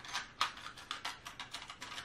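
Small knitting notions clicking and rattling against each other as they are picked through by hand in a notions pouch: a quick, irregular run of light clicks.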